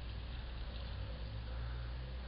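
Faint steady low hum under a light hiss of background noise, with no distinct event.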